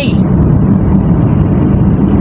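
Steady engine and tyre-on-road noise of a car being driven, heard from inside the cabin, a continuous low rumble with a faint steady hum.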